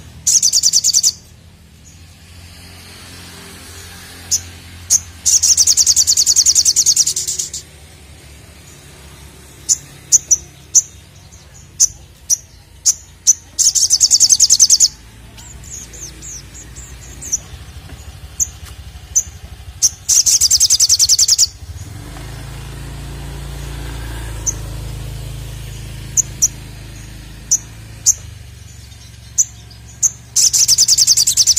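Male olive-backed sunbird (sogon) singing: scattered short, high, sharp chirps broken by four loud, fast, high-pitched trills, each lasting one to two seconds.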